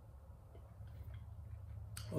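Quiet room with a low steady hum and a few faint, small sounds as a man sips rum from a tulip-shaped tasting glass.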